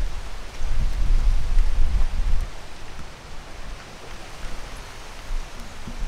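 Wind rumbling on the microphone for the first two and a half seconds, then dropping away to a steady, quieter outdoor hiss.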